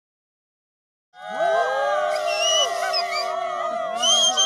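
A group of men and women cheering together in long, drawn-out whoops. Many voices come in at once about a second in, rising and then holding overlapping pitches.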